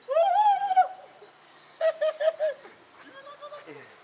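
High-pitched human voice calling out in a long wavering shout, then a quick run of four short syllables like laughter, then fainter calls ending in a falling note.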